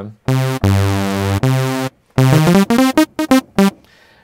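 Stack of detuned, stereo-panned sawtooth oscillators in the MachFive 3 software sampler's Analog Stack, played as a thick synth sound. It plays a short note, then a held low note, then a quick run of short notes.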